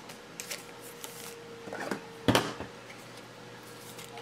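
Trading cards and plastic card holders being handled and set down on a table: a few small taps and one sharp click a little past halfway, over a faint steady hum.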